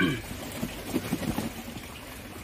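A voice breaks off at the start, then low, irregular rustling and handling noise as the guitar's packaging is handled.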